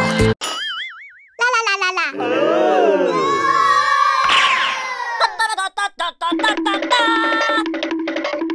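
Edited-in cartoon sound effects: a short warbling tone, then a run of swooping boing-like glides and a falling sweep, followed by chiming notes over a quickly repeated low note.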